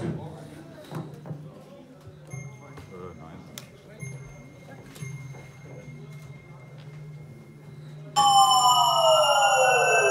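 1974 RMI Harmonic Synthesizer sounding a loud sustained tone that starts suddenly near the end. It is a dense stack of overtones mixed on its harmonic generators, with some partials gliding apart, one falling and one rising. Before it there is only a low hum and faint clicks.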